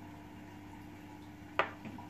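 A faint steady hum, then a single sharp click about one and a half seconds in as a small glass test vial is set down on a wooden table.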